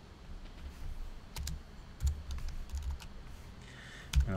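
Computer keyboard typing: a handful of light, separate keystrokes, most of them bunched between about one and three seconds in.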